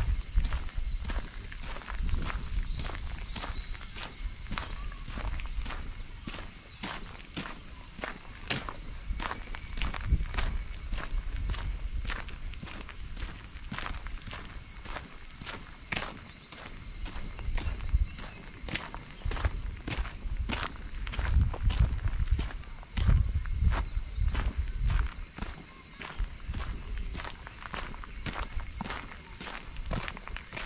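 Footsteps on a sandy dirt path at a steady walking pace, about two steps a second, with a steady high-pitched insect chorus behind them.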